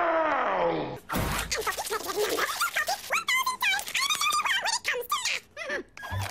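A cartoon character's loud, shouted laugh that falls in pitch, followed by a busy stretch of rapid clicks and quick, squeaky, warbling voice sounds.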